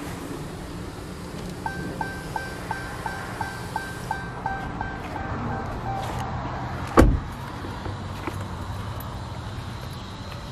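Dodge Charger's dashboard warning chime pinging rapidly, about three times a second, for about four seconds, with the driver's door standing open. A single loud thump about seven seconds in, a car door being shut, over a low steady hum.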